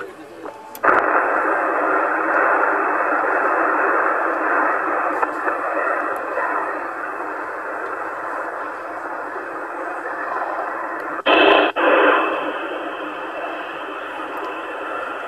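CB transceiver's receiver hiss on the 27 MHz band: steady static with no readable signal, coming in about a second in once the transmission ends, after a call that went unanswered. Near the end a brief louder burst of noise, as the rig is switched from USB to FM, after which the hiss carries on with a brighter edge.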